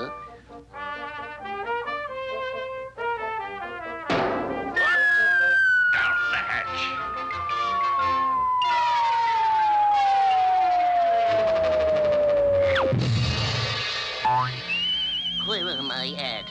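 Cartoon sound effects over an orchestral score: staccato music, then a sudden pop as the balloon bursts, followed by a long descending slide whistle as Popeye falls, ending in a low crash about thirteen seconds in. A warbling whistle tone comes in near the end.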